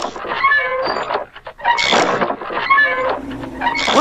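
Cartoon sound effects for an animated interlude: a noisy swish followed by short, high, chirpy calls, the pattern repeating about every two seconds.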